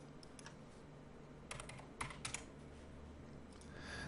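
Faint computer keyboard and mouse clicks: a few scattered key presses, grouped mostly in the middle, over a low steady hum.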